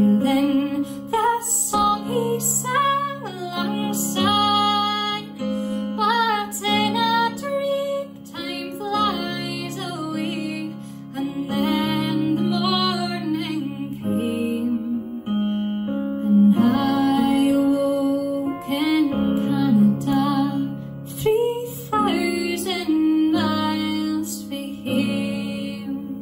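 A woman singing a slow Scottish folk ballad in long phrases with short pauses between them. Low notes are held steadily underneath the voice.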